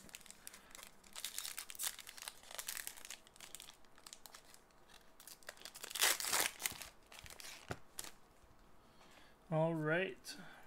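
A hockey card pack wrapper crinkling and being torn open by hand, in a run of short rustles and rips, the loudest tear about six seconds in.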